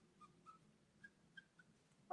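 Near silence, with a few faint, short squeaks of an alcohol-based marker's nib stroking across marker paper.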